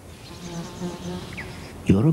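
An insect buzzing in flight, a low steady buzz that wavers and breaks up briefly in the first second.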